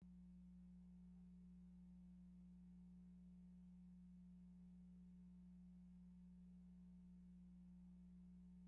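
Near silence: a faint, steady low hum with no other sound.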